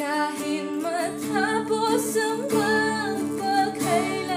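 A woman singing a slow pop ballad in full voice, accompanied by her own acoustic guitar strumming steady chords.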